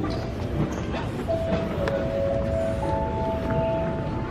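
Steady rumble and hiss of a large airport terminal hall. About a second in, a steady held tone starts; two more join at different pitches by about three seconds, stacking into a sustained chord.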